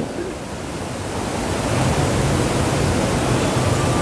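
A steady rushing hiss that grows a little louder over the first two seconds, then holds.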